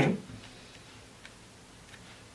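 Two faint, short ticks, a little over a second in and again near the end, over a low steady hum.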